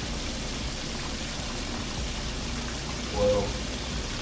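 Floured chicken pieces deep-frying in hot oil in a skillet: a steady sizzle of bubbling oil. A short voice sound cuts in about three seconds in.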